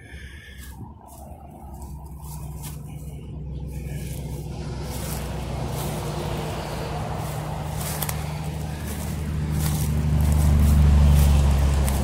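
Interstate highway traffic passing close by: tyre and engine noise with a low hum, rising steadily as a vehicle approaches and loudest near the end.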